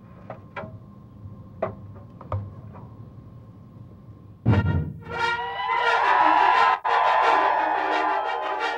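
A few faint clicks and knocks, then about four and a half seconds in a loud hit opens a TV segment's theme music sting, which plays on with several held notes.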